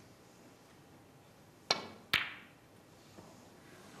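Snooker shot: a sharp click of the cue tip striking the cue ball, then about half a second later a second crisp click with a brief ring as the cue ball strikes the yellow.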